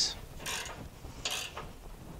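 A flange nut being run down the threaded rod of a combine's spring belt tensioner, in two short metallic scraping bursts about a second apart; this takes the tension off the belt for removal.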